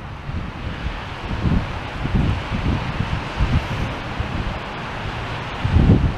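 Wind blowing across the microphone: a steady rushing noise with irregular low buffeting gusts.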